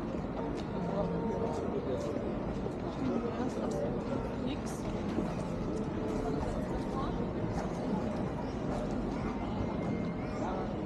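Busy street ambience: indistinct voices of passers-by over a steady low rumble of traffic.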